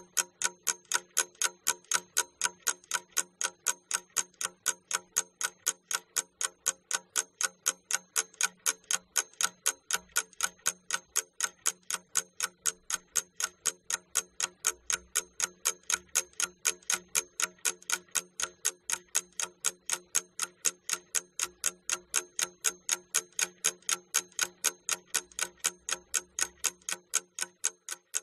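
Clock-ticking sound effect used as a timer for a classroom task: a steady, even ticking, about five ticks every two seconds.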